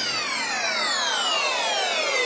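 Closing sweep of a dubstep/glitch hop track: a synthesizer tone sliding slowly and steadily down in pitch with no beat under it.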